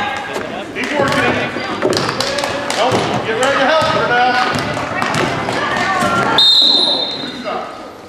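Basketball being dribbled and bouncing on a gym's hardwood floor, under spectators' voices calling out. A steady high whistle blast, a referee's whistle, sounds for about a second roughly six and a half seconds in, and is the loudest moment.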